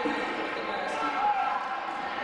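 Basketball being dribbled on a hardwood gym floor during play, with voices calling out on the court.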